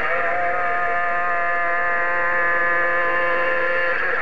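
A long, steady held note with evenly spaced overtones, coming in over a President HR2510 CB radio's speaker from another station on the channel, in the radio's narrow tinny band.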